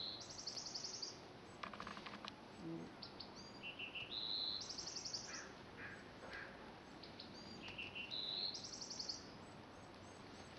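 A songbird repeating the same short song three times, about four seconds apart, each phrase stepping up through a few high notes into a fast trill. A brief rattle of clicks comes about two seconds in.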